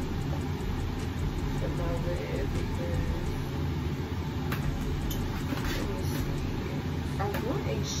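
A steady low background hum, with faint murmured words about two seconds in and again near the end.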